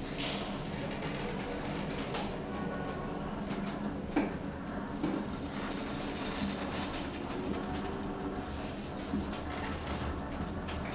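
Steady hum of a glass elevator car travelling up through a ship's atrium, with a few light knocks, the sharpest about four seconds in.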